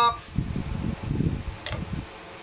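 Low, irregular rustling and bumping: handling noise on a hand-held phone's microphone and bedding moving as the dogs shift on the bed. It comes just after the end of a drawn-out spoken "hi".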